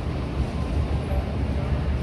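Steady low rumble of store background noise in a freezer aisle, with no clear separate event.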